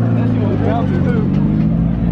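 Mazda Miata's four-cylinder engine running steadily at low speed as the car creeps along, with crowd voices over it.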